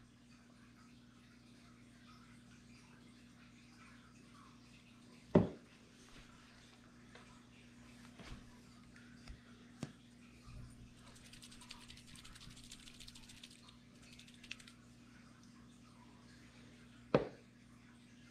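Small handling noises of a capped glass test tube and a plastic dropper bottle: a few sharp clicks, a soft fine rattle from about 11 to 14 seconds in as the tube is shaken, and the tube set down on the table near the end. A low steady hum runs underneath.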